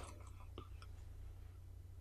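A very quiet pause in a man's speech: faint steady low hum of room tone, with a couple of faint small clicks a little over half a second in.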